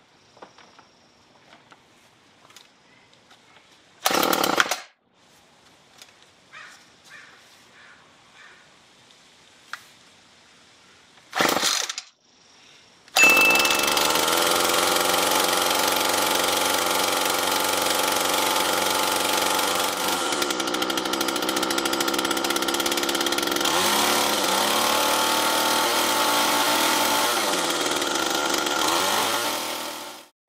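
Poulan Pro PPB100 two-stroke string trimmer engine being pull-started: two short loud bursts about 4 and 11 seconds in, then it catches about 13 seconds in and runs steadily at high speed. Near the end its speed dips and picks up again a few times as the throttle is eased off and reopened. It is running again after the carburetor repair.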